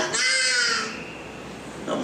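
A man's high, raspy shout through a microphone, held for nearly a second with a slightly falling pitch, then a quieter pause before he speaks again.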